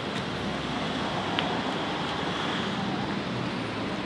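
Steady city street background: an even hum of road traffic with no single event standing out.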